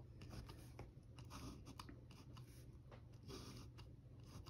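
Very faint scratching and small clicks of a Wite-Out correction tape dispenser being drawn along a paper planner page.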